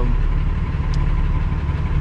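Infiniti G35's engine idling steadily, heard from inside the cabin.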